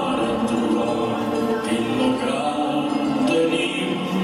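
Music with singing voices, steady throughout, accompanying a couple's dance routine.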